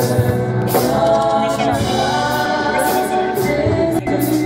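Live gospel worship singing: women's voices through the church sound system, with keyboard accompaniment and recurring light percussion hits.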